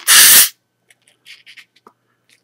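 Pressurised carbon dioxide from a baking soda and vinegar reaction escaping from a sealed baby bottle in one short, loud hiss lasting about half a second as the pressure is released and the swollen nipple goes slack. Then faint clicks of the bottle being handled.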